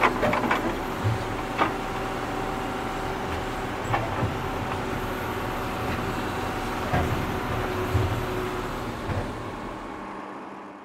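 Tractor engine running steadily while digging, with occasional sharp knocks and clanks from the digging gear. The sound begins to fade out near the end.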